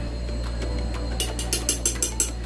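Light clinks of a kitchen utensil against the blender jar, about five quick taps in the second half, over quiet background music.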